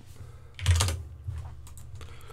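A few separate keystrokes on a computer keyboard as numbers are typed into a field. The loudest comes about two-thirds of a second in, with lighter clicks after it, over a low steady hum.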